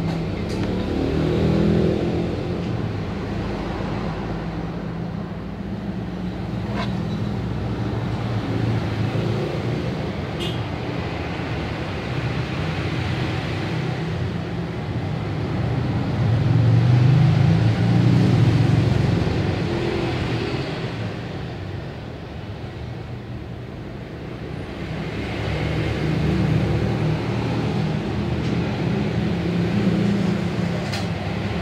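Steady low rumble of background noise with a hum underneath, swelling louder twice, once around the middle and again near the end.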